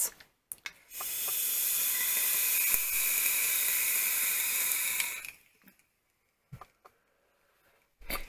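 Indulgence Mutation X MT-RTA rebuildable tank atomizer hissing steadily for about four seconds as a long drag is drawn through it, its 0.33-ohm coil firing at 60 watts. The hiss stops abruptly at the end of the drag.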